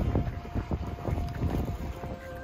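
Wind buffeting the microphone in irregular gusts, a low rumble, with a faint steady high tone under it.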